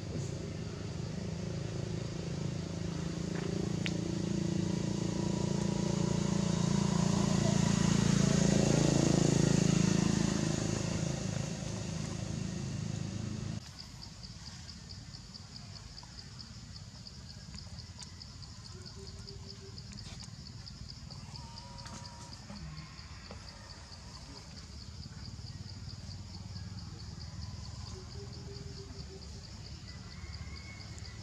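A motor vehicle running close by, growing louder over about ten seconds and then fading, cut off abruptly a little before halfway. After the cut a quieter outdoor background with a steady, high, pulsing buzz.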